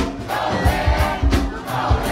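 A live go-go band playing: a quick, steady drum and percussion beat of about four hits a second, with voices singing over it.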